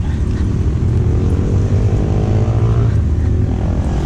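A motor vehicle's engine humming over a low steady rumble. Its pitch rises slightly and it fades out about three seconds in.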